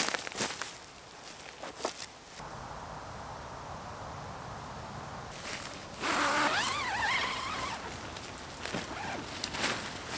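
The zip on an OEX Bobcat 1 tent's flysheet door being run for about two seconds, starting about six seconds in. A few light knocks and rustles come in the first couple of seconds.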